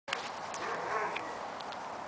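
A dog sniffing and moving about in grass, with a few faint, short clicks spread through it.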